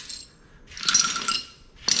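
Loose metal parts of a motorcycle rear axle assembly clinking and jingling about a second in. Then a sharp metallic click near the end, followed by rattling as the axle is worked out.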